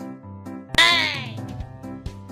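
A single loud pitched cry about three-quarters of a second in, falling in pitch over about half a second, over background music with a steady beat.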